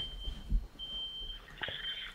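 A faint, thin, high-pitched electronic tone that sounds in short stretches of about half a second, with a soft low thump about half a second in.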